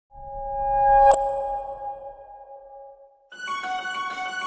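Logo sound: a tone of two steady notes swells up, peaks with a sharp click about a second in, then fades away. Intro theme music with several held notes starts a little after three seconds.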